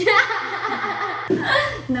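A woman laughing: a chuckle lasting just over a second, a brief break, then a shorter laugh before she says "No" at the very end.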